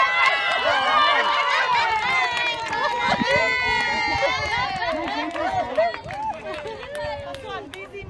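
Several players shouting and cheering at once on a soccer field as the ball goes into the goal, loudest at the start and dying down over the next few seconds.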